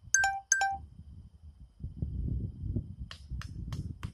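Two short, identical electronic beeps in quick succession, about half a second apart, like a phone notification tone. Later a low rumbling noise sets in, with a few sharp high clicks near the end.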